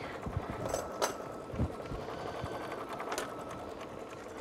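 Embroidery machine running steadily as it stitches a free-motion design. A few sharp clicks and soft knocks come from tools and a plastic quilting ruler being handled on the table, the clearest about a second in and again past three seconds.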